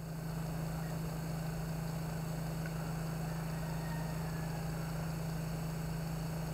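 A steady low hum with faint hiss, unchanging throughout, with no music or footsteps heard.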